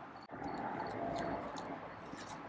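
Quiet night ambience with faint cricket chirps repeating at a steady pace over a soft background hiss.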